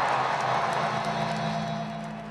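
Large stadium crowd cheering and applauding, dying down as the anthem is about to begin.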